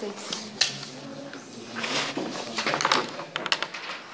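Muffled, indistinct voices in a small room, with rustling and sharp clicks from fingers handling a phone close to its microphone, busiest in the middle of the stretch.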